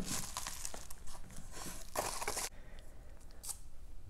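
Plastic card sleeves and a hard plastic grading slab being handled: soft crinkling and rustling with a few light clicks, dying down about halfway through.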